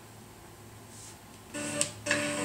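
Quiet lull of room tone with a steady low hum, and a short soft pitched sound with a click near the end.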